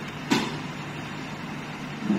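Steady low background hum, with one short sharp click about a third of a second in.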